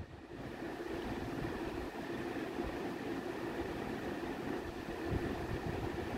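Steady background noise: an even hiss with a faint low hum and no distinct events.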